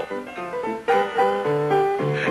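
A piano playing a few bars: several struck notes and chords, with a fresh chord about a second in, as the opening of a country music revue show.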